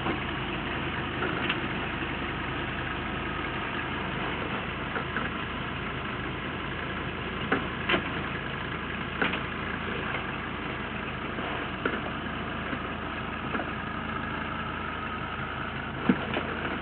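Diesel engine of a Toyota Land Cruiser 70-series soft-top running steadily at low revs as it crawls over a rock ledge. A few sharp clicks and knocks come through, most clearly around the middle.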